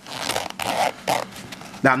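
Fabric of a Veto Pro Pac TP-XL tool bag's top flap rustling and crinkling as hands work the flap and its zippered pocket, lasting about a second.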